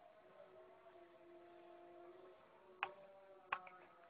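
Near silence with a faint steady hum, and two sharp taps near the end, less than a second apart.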